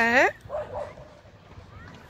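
A woman's short exclamation at the very start, its pitch gliding sharply upward, followed by a few faint vocal sounds and then a quieter stretch.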